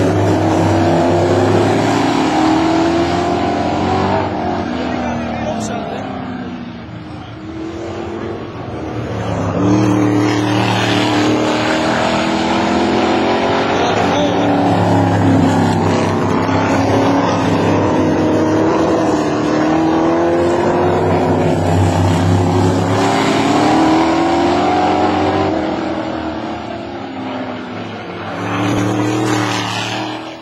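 Winged sprint-type race car engines running hard around the circuit, their pitch rising and falling as they accelerate and lift off. The sound fades about seven seconds in and again near the end, then swells as a car comes close.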